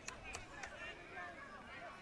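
Faint field ambience of distant voices, players and spectators calling, with a few soft clicks near the start.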